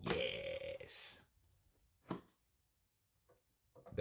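A small unboxing knife slicing through the seal on the side of a smartphone box, the cut lasting about a second. It is followed by a single short tap about two seconds in.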